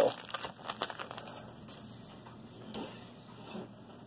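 A trading-card pack wrapper crinkling as it is torn open and handled, busiest in the first second, then fainter rustling.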